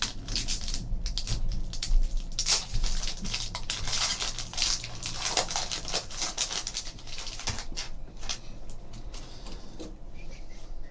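Trading cards and foil pack wrappers being handled by hand: a run of quick rustles, crinkles and light scrapes as a pack is torn open and cards are slid out and flipped, busiest in the middle.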